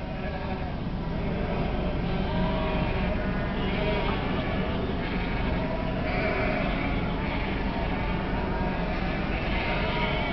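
A large flock of sheep bleating, with many calls overlapping continuously over a low steady rumble.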